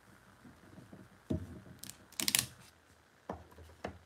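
Small plastic model-kit wall and window pieces being handled and set down on a tabletop: a handful of light clicks and taps, the loudest cluster about two seconds in.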